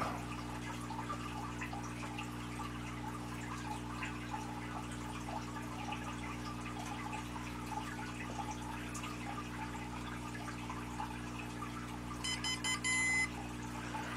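A quiet, steady electrical hum, then, near the end, about a second of rapid high-pitched electronic beeps as the gimbal controller finishes booting.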